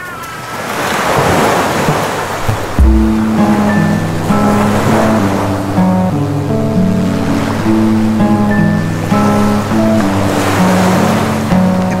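Surf sound: waves washing in and out in repeated swells. About three seconds in a low thud comes in, then a simple stepped melody over a steady low drone joins the waves as the programme's theme music.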